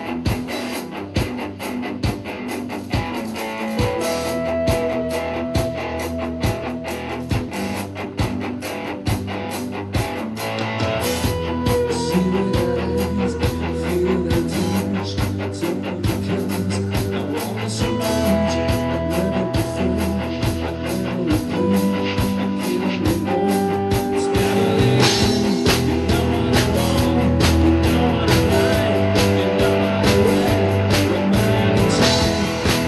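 Live rock band playing: an electric guitar carries held, bending lead notes over drum kit and bass, the whole band growing gradually louder.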